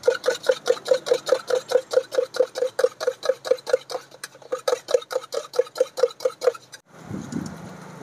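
Eggs being beaten by hand with a thin utensil in a plastic jug: quick, even taps against the jug's side, about five a second, each with a hollow knock. The beating stops about seven seconds in, giving way to a softer steady noise.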